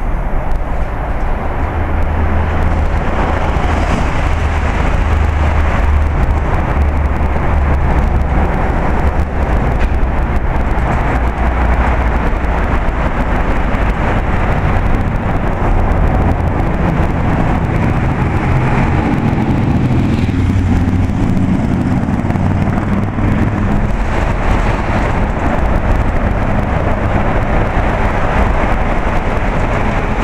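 Loud, continuous road-traffic noise from cars passing close by on a bridge deck, with a heavy low rumble underneath.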